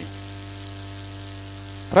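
A steady hum made of several constant pitches, low and high, unchanging throughout, in a pause between spoken phrases.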